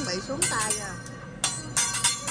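Steel teppanyaki spatula and utensils clinking against each other with a metallic ring, in two short clusters of quick strikes. The clinks sit over restaurant background music and voices.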